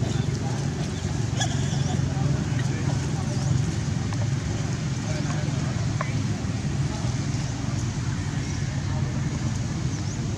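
Steady low outdoor rumble like distant traffic, with indistinct background voices and a few brief high chirps scattered through it.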